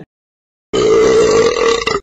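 A person burping loudly once: one long, rough burp of a little over a second, starting just under a second in and cut off abruptly.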